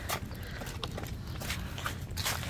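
Footsteps scuffing on concrete strewn with dry leaves, with a few light clicks over a low steady rumble.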